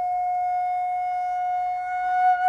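Concert flute holding one long, steady note.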